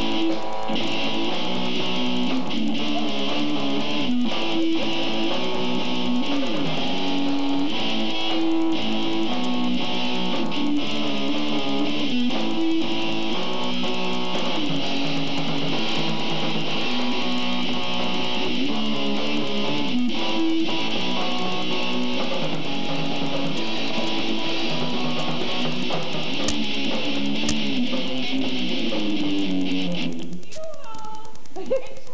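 Live band music led by an electric guitar strumming chords, steady and unbroken, the 'racket' of a student band playing on stage.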